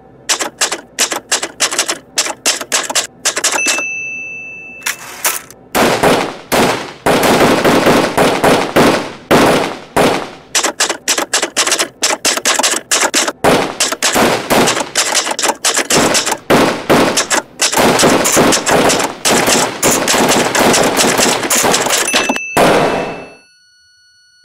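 Typewriter keys striking, sparse at first, with the carriage bell ringing about three and a half seconds in. From about six seconds the strikes become a dense, loud, rapid run, and a second bell ding comes near the end before the sound cuts off.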